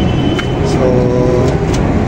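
A man's voice saying a single word over a steady low rumble.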